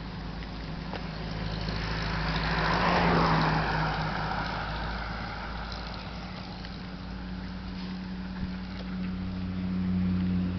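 A vehicle passing by on the road: its tyre and engine noise builds to a peak about three seconds in, drops in pitch as it goes by, then fades. A steady low hum runs underneath, and the noise rises again near the end as another vehicle approaches.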